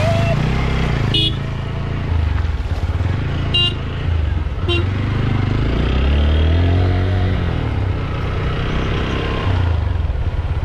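TVS Apache 160 single-cylinder motorcycle engine running under way, its pitch rising and falling with the throttle. Water splashes from the front wheel in the first second, and three short horn toots sound about one, three and a half and four and a half seconds in.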